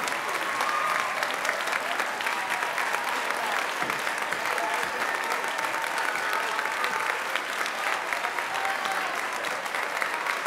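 A large crowd applauding steadily in a gymnasium, a standing ovation, with shouting voices mixed into the clapping.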